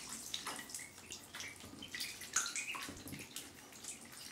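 Indian Runner, Swedish and Cayuga ducklings paddling and splashing in shallow bathtub water, with small scattered splashes and drips and a few short rising peeps.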